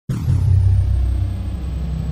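Deep, loud rumble sound effect for an intro logo sting. It starts abruptly and holds steady, with a thin high whine above it.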